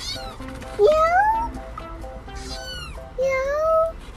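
A kitten meowing several times, each meow rising in pitch, with the loudest meows about a second in and near the end, over background music.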